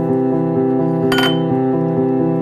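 Slow piano music plays throughout; about a second in, a single short clink of glass rings out briefly over it.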